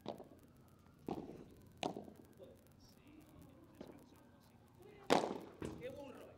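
A padel rally: the ball is hit with solid padel rackets and bounces on the court, making six sharp pops at uneven gaps. The loudest pop comes about five seconds in.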